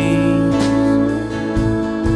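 Live country band music: acoustic and electric guitars, bass guitar and drums playing, with a woman singing. A couple of drum strokes fall about half a second and a second and a half in.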